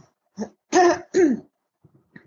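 A person clearing their throat: a faint breath, then two short voiced bursts in quick succession.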